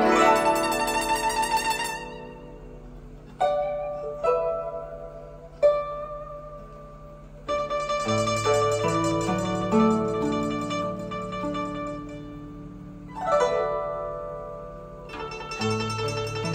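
Guzheng, the Chinese plucked zither, being played: a fast shimmering run at the start, then single plucked notes ringing out and fading. About halfway through a fuller passage begins with deeper notes underneath, and there is a sweeping glissando across the strings near the end.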